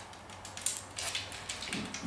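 Small sharp clicks and light knocks of hard transforming-robot-toy parts being handled and pressed together, the clearest about a second in.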